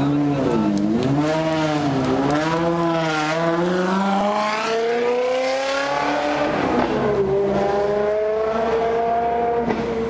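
Sports car engine pulling away: a few throttle blips, then it accelerates hard with rising revs, shifts up about seven seconds in and climbs again in the next gear.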